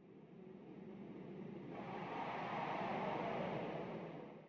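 A long whoosh of noise that swells over about three seconds and fades again near the end, played under a title card as a transition effect.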